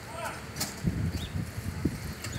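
Wind and handling noise on a phone microphone carried on a moving bicycle: uneven low rumbles, with a sharp click about half a second in.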